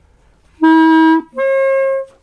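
A five-key period clarinet plays two sustained notes, a lower one and then, after a short break, a higher one. They sound the huge gap between the instrument's lower and upper registers, which cannot be bridged without keys.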